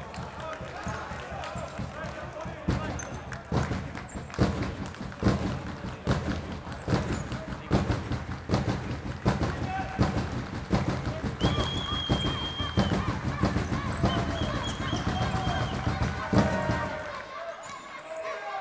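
Indoor futsal play: the ball being kicked and thudding on the wooden hall floor again and again, with players shouting to one another and a couple of brief high squeaks, all echoing in a large sports hall.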